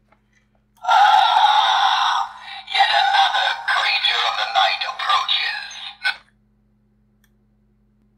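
Battery-powered talking skeleton scarecrow decoration playing its recorded sound clip through its small built-in speaker, thin and tinny: a harsh rasping part about a second in, then after a short break a longer voice-like part that cuts off about six seconds in. It plays this one clip once and stops.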